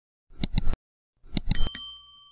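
Subscribe-button animation sound effects: two quick clicks, then a second cluster of clicks about a second and a half in, followed by a short bell ding that rings on briefly.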